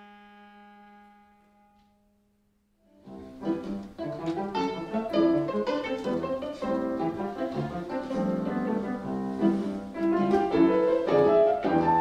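A viola's held bowed note fading out, then after a moment of silence a lively piece begins on viola played pizzicato, its strings plucked in quick, sharply struck notes with piano accompaniment.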